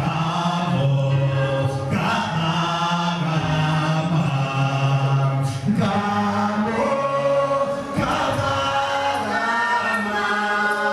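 A man singing a gospel song into a microphone, with other voices singing along, in long held notes and no instruments.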